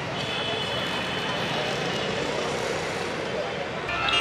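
Busy street noise: a steady rumble of traffic with a faint murmur of voices.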